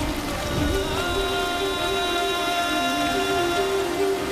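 Steady rain falling, under background music: a low melody stepping between a few notes, with a high held tone coming in about a second in.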